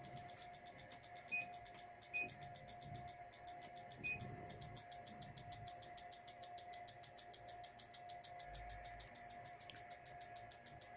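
Faint electronics on a test bench: a steady thin whine with a fast, even ticking, and three short high beeps in the first half.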